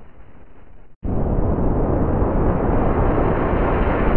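Heavily distorted, noisy rumble from an effects-processed logo-animation soundtrack. It is fading at first, cuts out completely for a moment about a second in, then comes back loud and stays loud.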